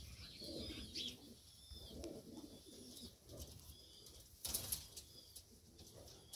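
Domestic pigeon cock cooing softly, a few low repeated coos; the singing marks the bird as a male. A brief sharp rustle about four and a half seconds in.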